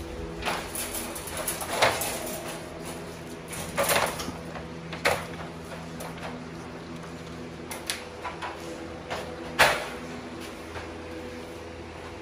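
A steady hum with several held tones, broken by about half a dozen short knocks and rattles.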